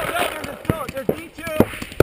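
Paintball markers firing a handful of sharp, irregular pops, with players' shouted callouts faintly heard between them.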